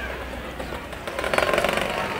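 Outdoor street background with a fast mechanical rattle that starts about a second in and keeps going.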